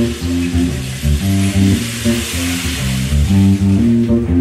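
Live band playing an instrumental passage: a repeating pattern of bass and guitar notes under a high hiss that swells in the middle.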